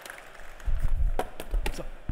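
Microphone handling noise: irregular low thuds and rumbling with a few sharp clicks, starting a little under a second in. A man says "So" near the end.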